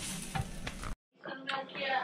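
Waffle batter sizzling and steaming inside a closed 1946 Sunbeam electric waffle iron, still cooking and not yet done. The hiss cuts off abruptly about a second in.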